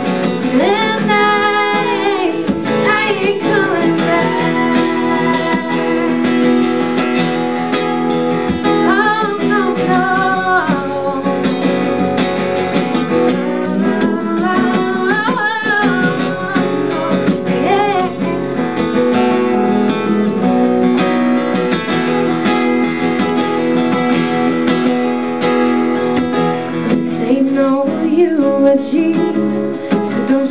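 Acoustic guitar strummed live, with a woman's singing voice over it.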